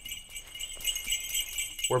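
Jingle bells shaking in a steady, bright high-pitched shimmer, a sleigh-bell sound effect.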